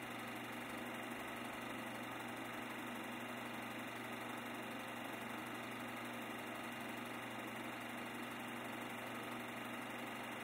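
A steady, unchanging mechanical hum with hiss over it, with no change in pitch or level.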